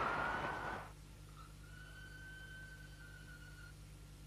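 Outdoor street ambience fading out about a second in, leaving a faint steady low hum and a thin high steady whine through the middle.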